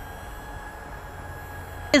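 Steady outdoor background of low wind rumble on the microphone, with a faint, level high-pitched whine over it.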